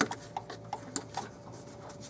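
A few sharp, irregular clicks and ticks, about five in two seconds and loudest at the start, as a gloved hand works a rubber line and its fittings loose on the throttle body.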